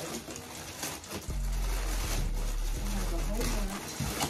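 Plastic mailer bag crinkling and rustling as it is handled and pulled open, in irregular short bursts, over a steady low hum that drops out at times.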